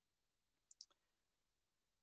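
Near silence, broken by a faint computer mouse click a little under a second in, opening a menu on screen.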